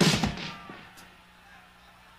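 A single loud hit from the band on stage, a drum-and-cymbal stab, ringing away over about half a second. Then only a faint steady hum from the stage amplification, with one small click about a second in.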